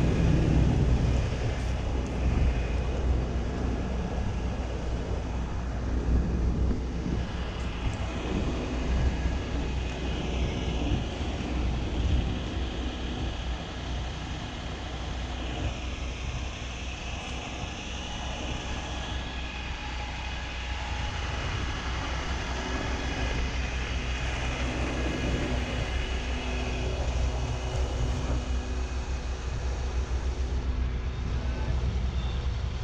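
Large diesel engine idling steadily, a low even rumble that fades a little in the middle and comes back louder near the end.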